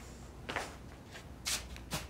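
A few short, soft rustling sounds, the loudest about one and a half seconds in.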